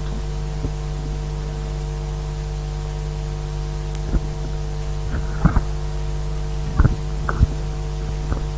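Steady electrical hum with a faint hiss, and a few short knocks or clicks in the second half, two of them close together near the middle.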